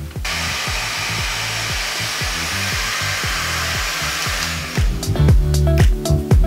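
Handheld hair dryer blowing with a steady rushing hiss, switched on just after the start and cut off about four and a half seconds in. Background music with a steady beat plays under it and comes up louder once the dryer stops.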